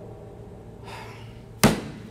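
A short breath, then a single sharp knock about a second and a half in.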